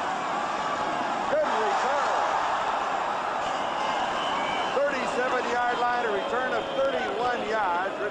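Football stadium crowd noise, a steady roar from the stands, with a man's voice coming in over it in the last few seconds.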